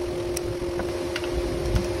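A steady hum with a low rumble, with a few faint clicks of metal hand tools being picked up and handled on a workbench.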